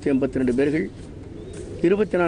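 A man speaking into a cluster of microphones, with a short pause in the middle before he goes on.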